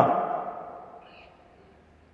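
A man's voice trailing off as the last syllable fades away over about a second with the echo of the room, then a near-silent pause.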